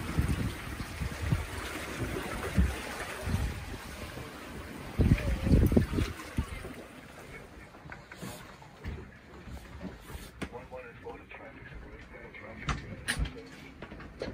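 Wind buffeting the microphone over water rushing past a sailboat's hull, in strong low gusts. About halfway through it drops to a quieter cabin below deck, with scattered clicks and knocks of handling.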